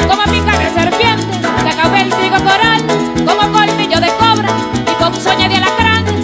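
Instrumental passage of Venezuelan llanera music: a harp playing quick runs over short plucked bass notes, with maracas shaken in a fast, even rhythm.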